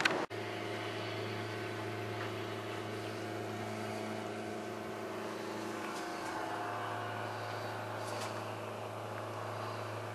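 A boat's engine running at steady speed while under way, an even low hum. It starts after a brief cut near the start.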